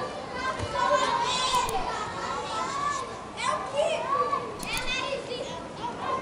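A group of children shouting and chattering together, many voices overlapping.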